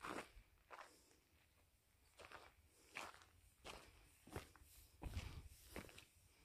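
Faint footsteps of a person walking on dry ground, about eight uneven steps.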